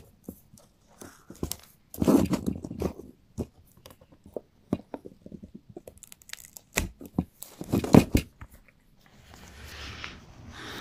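Side cutters snipping plastic mounting nubs off the back of a replacement car emblem. Sharp snaps and crunches as the plastic gives way, in a cluster about two seconds in and another, loudest one near eight seconds.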